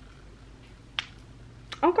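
Quiet room tone broken by a single sharp click about a second in; a woman's speech begins near the end.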